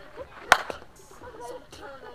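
A bat strikes a pitched ball once, about half a second in: a single sharp crack with a brief ring after it.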